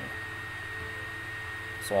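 Steady background hum and hiss with a faint, constant high-pitched whine, with no distinct event in it: the recording's room tone and electrical noise between spoken phrases. Speech begins right at the end.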